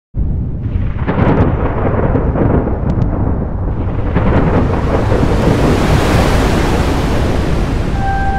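A thunder-like sound effect with a deep, steady rumble that starts abruptly. Crackles come about a second in, then a rushing, wind-like noise swells to a peak about six seconds in.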